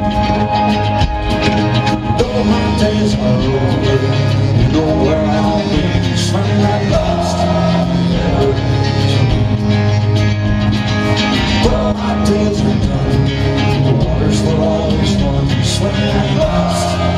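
A rock band playing live: electric guitar, bass, drums and keyboard together at full volume, with cymbal hits throughout.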